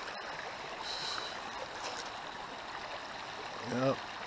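Shallow river water running over a rocky bed, a steady rushing hiss. A brief vocal sound near the end.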